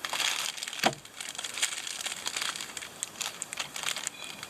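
Clear plastic cigar wrapper crinkling and crackling in the hand as a cigar is taken out of its pack, with an irregular run of small crackles and a sharper snap about a second in.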